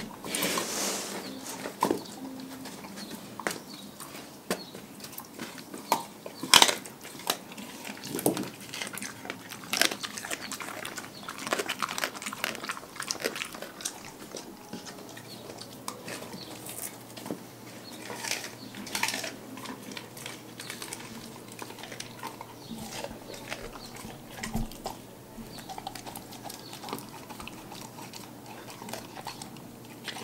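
Large dog biting and chewing a whole raw white fish on a tile floor: irregular wet crunches and bites, the loudest about six and a half seconds in.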